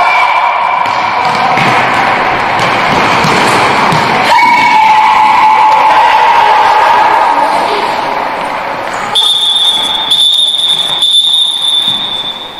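Futsal play in an echoing indoor hall: the ball kicked and bouncing on the wooden floor, with players' shouts. From about nine seconds in, a steady high-pitched tone joins in and holds.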